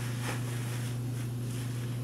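A steady low hum under even room noise, with a faint rustle about a quarter of a second in.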